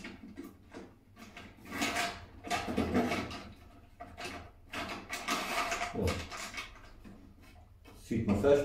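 Featherboards being slid and worked by hand in the T-slot track of a table saw's rip fence: irregular scraping and clicking handling noises in a few bursts, with a short low thump about six seconds in.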